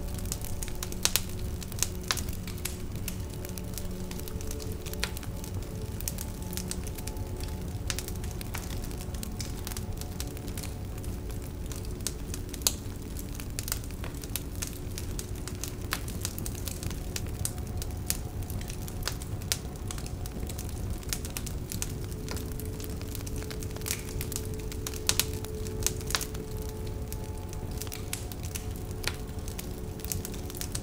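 Wood fire crackling in a stainless steel fire pit: frequent sharp pops and snaps over a low steady rush, with soft background music.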